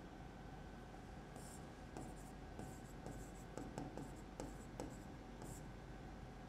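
Stylus or pen writing on a digital display board: faint, irregular short strokes and taps, coming more often from about two seconds in.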